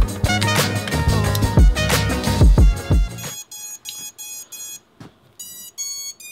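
Background music with a heavy beat that stops about three seconds in. Then a run of short electronic startup beeps as the miniquad is powered up: four even beeps, a short pause, then three at stepping pitches.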